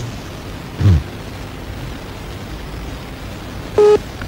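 Telephone line hiss while a call rings through, with a short falling voice-like sound about a second in. Near the end comes the brief start of the next ringback tone, a steady single beep that cuts off quickly as the call is answered.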